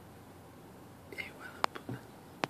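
A faint whisper about a second in, followed by two sharp clicks and a low thump near the end.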